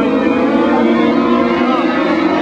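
Several 600 Modified race cars' small motorcycle-derived engines running hard together around the dirt track, a steady layered engine sound whose pitches drift slightly as the cars go by.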